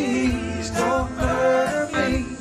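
Live rock band playing: electric guitars, electric keyboard and drums, with a sung vocal line over them.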